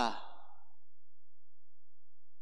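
A man's spoken word ending in a breathy exhale into a handheld microphone, fading out within half a second, then silence.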